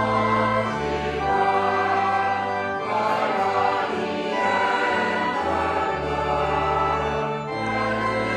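Church choir and congregation singing a hymn with organ accompaniment, the organ's held bass notes changing every second or so.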